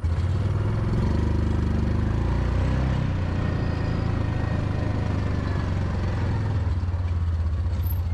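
A small engine running steadily, with an even low throb and no change in speed.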